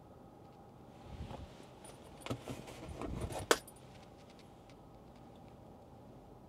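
Handling noise of a small plastic USB adapter at the car's USB socket: soft rustling and light clattering from about a second in, ending in one sharp click about three and a half seconds in.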